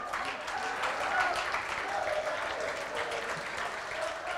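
Audience applauding steadily in a hall after a name is announced, with a few faint voices among the clapping.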